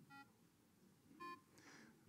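Two short, faint electronic beep tones about a second apart, the second higher than the first: starting pitches sounded for the song leader before an unaccompanied hymn. The rest is near silence.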